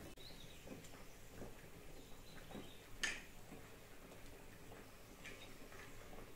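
Faint, scattered small clicks and ticks, with one sharper click about three seconds in.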